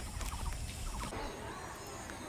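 A few short, rapid trilling animal calls over a steady low rumble in the first second, then the sound changes abruptly to a quieter background with faint high chirps.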